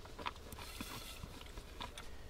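Faint scraping and a few soft clicks from a spatula working soaked soup mix of beans and grains out of a bowl into a stainless steel pot.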